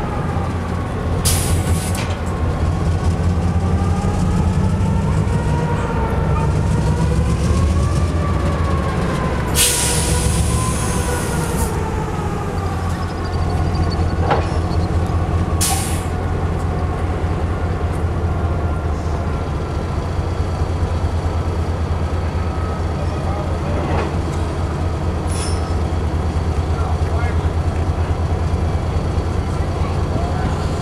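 Sacramento Northern 402 diesel switcher locomotive idling with a steady low engine rumble. A burst of hiss lasts about two seconds roughly a third of the way in, and there are a couple of brief sharp sounds.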